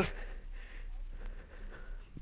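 A short dramatic pause in an old broadcast recording: a man's voice cuts off at the very start, leaving only faint steady hiss and a low mains hum.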